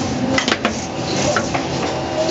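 Urbinati RW8 seedling transplanter running on an automatic potting line: steady machine noise with several sharp metallic clicks and clatter as its pneumatic grippers work.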